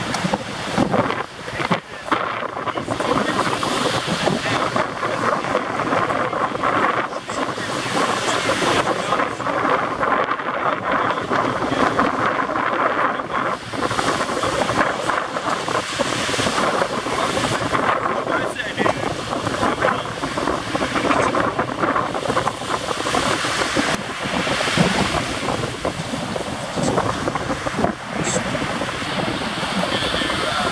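Wind buffeting the camera microphone in gusts, over the steady wash of breaking surf.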